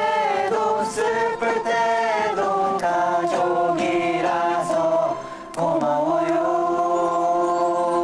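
A group of young men singing a Korean song together in unison, with a short break about five and a half seconds in, then one long held note.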